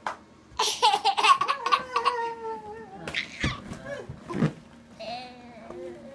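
A one-year-old child laughing: a long, high laugh starting about half a second in that slides slowly down in pitch, then softer vocal sounds near the end.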